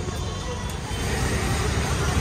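Street traffic noise: a steady low rumble of passing vehicles, getting louder about a second in.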